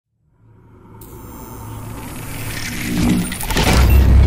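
Cinematic logo-intro sound effect: a swell that rises out of silence for about three seconds into a loud whoosh and a deep booming hit near the end.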